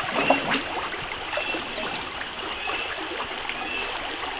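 Flowing water of a shallow, rocky stream, a steady rushing noise with a few small splashes.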